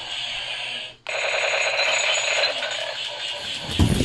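Rapid electronic beeping tones, alarm-like, broken by a brief dead gap about a second in. A dull thump comes near the end.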